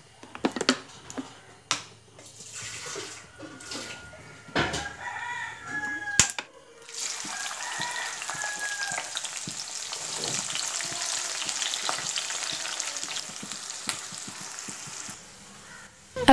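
Sliced onions sizzling in hot oil in an iron kadai, a steady hiss that sets in about seven seconds in and lasts until shortly before the end. Before it come a few scattered knocks of the pan and utensils.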